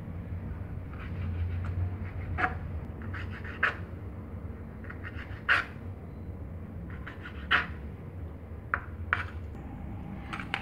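Kitchen knife slicing squid into rings on a plastic cutting board: separate sharp taps of the blade hitting the board, roughly one every second or two, over a steady low hum.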